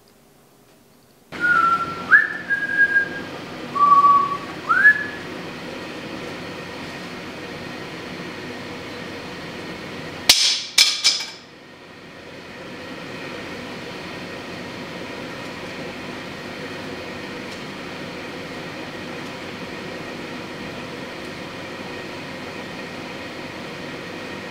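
Whistling: a few held notes, some sliding upward, over a steady background hiss. About ten seconds in comes a quick run of three or four sharp clicks.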